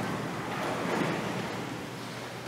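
A congregation sitting down in a large, echoing church: a broad, steady rustle and shuffle of many people, clothing and pews, with no voices.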